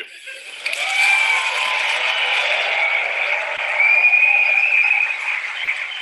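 Large audience applauding at the end of a talk, starting just after the speaker's closing "thank you", played back over a video call.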